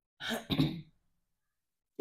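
A woman clearing her throat once, briefly, in two quick rasping pulses.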